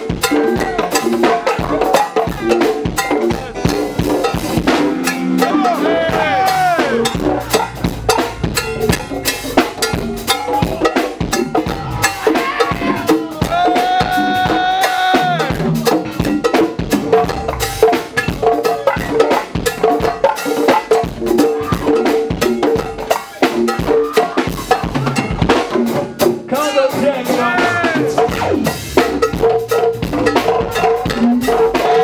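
Conga drums played in a fast, busy rhythm within live salsa-style music. A melody runs over the drumming, with one long held note about halfway through.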